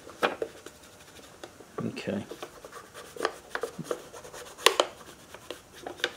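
A fingertip rubbing fingerprint powder across a sheet of paper laid over a metal engine cover: soft, scattered paper-rubbing and scratching noises with a few light clicks, one sharper click near the end. The rubbing traces the cover's sealing edge to mark out a gasket.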